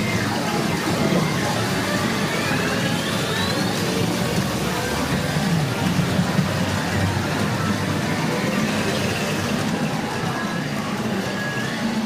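Loud, steady din inside a pachinko parlour: many machines playing electronic music and sound effects at once, with rising electronic tones in the first few seconds.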